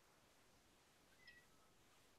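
Near silence: room tone, with one faint, brief, high-pitched chirp a little over a second in.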